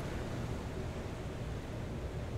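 Steady hiss with a low rumble underneath, even throughout, with no distinct events.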